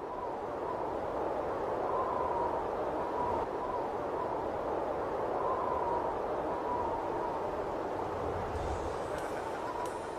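A steady rushing noise with a faint wavering tone running through it. It fades in from silence just at the start, with no beat.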